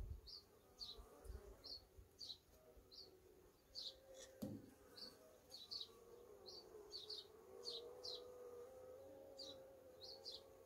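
Faint buzzing of honeybees around an open hive frame, a low wavering hum, with a small bird chirping short high notes repeatedly in the background. A soft knock comes a little before the middle.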